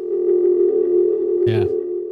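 A steady electronic tone held on one pitch with overtones, from a news show's logo transition bumper; it starts suddenly and holds throughout, with a single short spoken syllable over it about one and a half seconds in.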